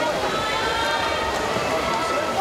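Indistinct voices, with long drawn-out calls held on one pitch, over a steady wash of swimming-pool hall noise.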